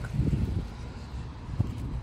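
Outdoor ambience: a low rumble of wind on the microphone, with one short knock about one and a half seconds in.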